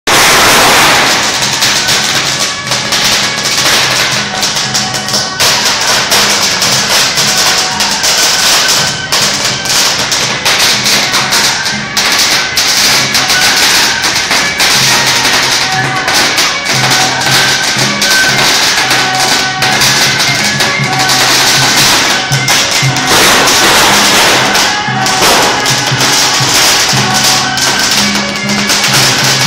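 A string of firecrackers crackling rapidly and without a break, over music with held notes.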